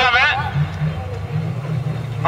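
Engines of several folkrace cars running under load as a pack slides through a dirt corner, a low drone whose pitch wavers up and down. A half-second of PA announcer speech is heard at the start.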